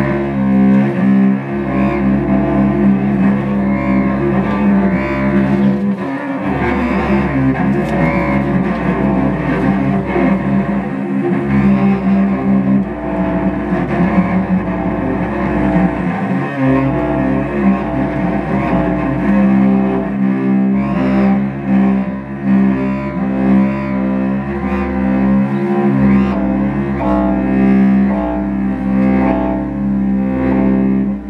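Contemporary chamber ensemble playing live, led by bowed strings: cello and other low strings hold long notes over a steady mid-range drone. The lowest notes stop and are taken up again every four to five seconds.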